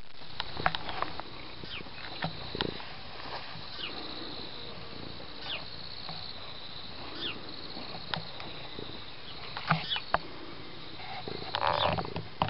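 Domestic cat purring right against the microphone, a steady low rumble, with scattered clicks and rustles as his fur and whiskers brush the microphone.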